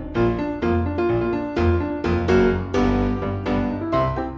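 Background music on a piano-like keyboard, notes struck at a steady beat over a bass line.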